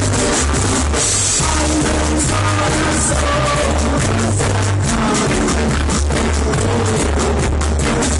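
Live roots reggae band playing, with a deep bass line changing notes under the drum kit. A voice shouts "Let's go!" with a laugh about three seconds in.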